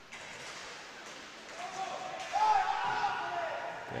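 Inline hockey rink sound in a large hall: a few faint knocks of sticks and puck, and a high shouted voice calling out from about one and a half seconds in.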